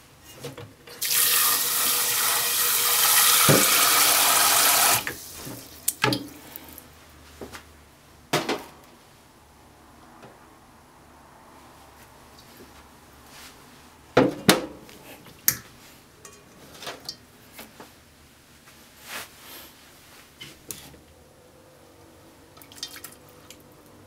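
Kitchen tap running into a sink for about four seconds, starting about a second in and cutting off suddenly. It is followed by several sharp knocks and light clatter.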